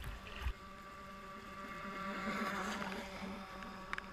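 Motor whine of a Pro Boat Shockwave 26 RC deep-V boat with a brushless electric motor, a steady pitched hum that swells to its loudest about halfway through and then fades. Water sloshes low against the microphone in the first half second.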